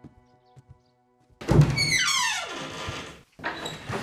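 A wooden lattice door being pushed open: a sudden thunk about a second and a half in, then a creak that falls steadily in pitch for over a second, and another knock near the end.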